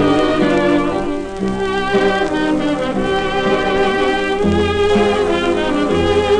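Early-1930s dance orchestra playing an instrumental passage of a Viennese waltz, played from a 78 rpm shellac record.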